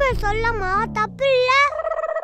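A child's high-pitched voice, speaking in a wobbling sing-song, with a low tone sliding slowly downward underneath. Near the end the voice holds one steady note.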